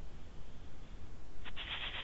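Background noise of an open microphone on an online meeting call: a steady hiss with a low hum underneath. Faint speech begins about one and a half seconds in.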